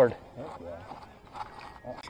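A few faint, light knocks and rustles as a landing net holding a rainbow trout is lifted aboard an inflatable boat.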